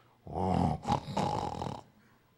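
A man imitating a bear's growl with his voice: one rough, raspy growl lasting about a second and a half.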